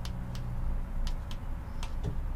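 A handful of light clicks from buttons being pressed on a small wireless trolling-motor remote, over a low steady hum that stops about a second in.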